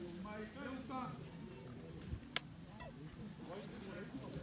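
Indistinct voices of people talking and calling out, with a single sharp click a little over two seconds in.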